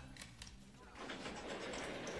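A button clicks, then about a second in an electric garage door opener starts up, its motor running as the wooden overhead door begins to roll open.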